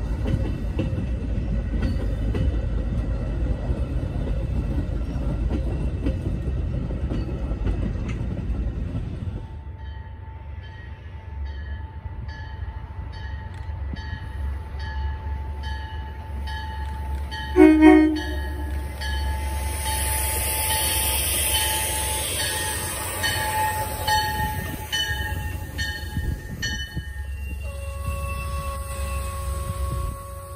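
Metra bilevel commuter coaches rolling past with a steady low rumble of wheels on rail. After a cut, an arriving Metra train led by its cab car sounds one short, loud horn blast about eighteen seconds in. Evenly repeating dings and a high hiss follow as it runs into the platform.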